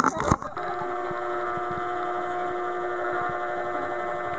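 Camera's zoom lens motor running as the lens zooms in: a steady electric whine of several pitches that starts abruptly about half a second in, after a few sharp knocks at the very start.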